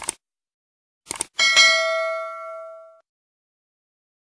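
Subscribe-animation sound effects: a mouse click, then two quick clicks a second later, followed by a bright, several-toned notification bell ding that rings out and fades over about a second and a half.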